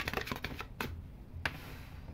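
Tarot cards being handled on a hard tabletop: a few sharp taps and clicks, with light sliding between them.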